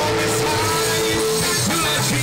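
Live band playing an instrumental passage, loud and continuous, with long held notes over the bass.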